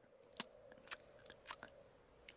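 A few soft, sharp lip smacks and mouth clicks, about four in two seconds, of someone tasting a mouthful of water.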